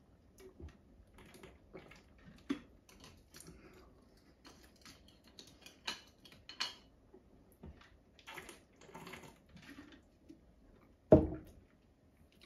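Faint, scattered clicks and taps of tableware while eating at a table: a spoon in a bowl and small tins being handled. About eleven seconds in, a louder single thump, as a plastic shaker bottle is set down on the wooden table.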